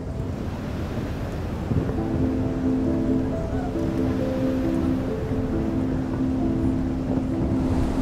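A steady rush of sea waves and wind. About two seconds in, soft music of long held notes comes in, moving slowly from pitch to pitch.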